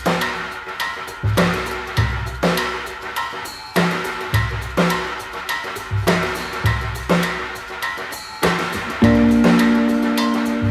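Instrumental opening of a song: a drum kit, with bass drum and snare, keeps a steady beat under pitched instrument notes. A loud sustained chord comes in about nine seconds in.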